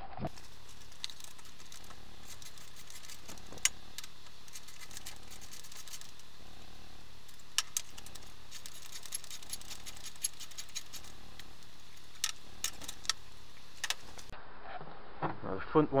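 Ratchet wrench and socket working hex bolts out of a seat's runners: scattered sharp metallic clicks and knocks, irregular rather than a steady ratchet rhythm, over a steady low background noise.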